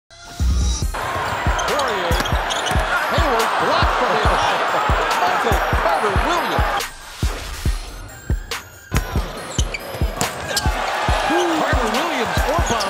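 Basketball game sound from the arena: a ball bouncing on the hardwood in steady thumps about twice a second, sneakers squeaking, and a steady crowd noise. The crowd drops away for a couple of seconds about two thirds of the way in.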